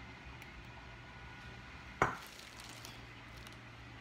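Faint low hum of room tone, broken once about two seconds in by a single sharp knock.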